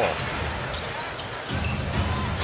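Basketball arena crowd noise, with a basketball being dribbled on the hardwood court.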